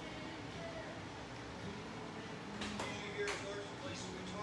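Quiet background music playing, with a few sharp crackles of a plastic water bottle being handled about two and a half to three seconds in.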